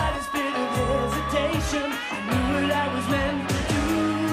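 Upbeat pop theme song: a singer over a steady drum beat and bass.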